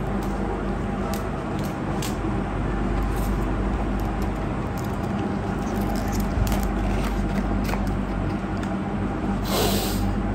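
Cardboard pizza boxes being handled and a box lid opened, with faint scrapes and clicks and a rustle near the end. These sit over a steady background noise with a low hum.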